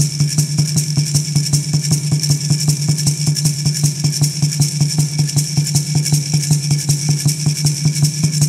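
Instrumental accompaniment of a Native American Church peyote straight song: a water drum beaten fast and evenly with its low ringing tone held, and a gourd rattle shaken in time with it, without singing.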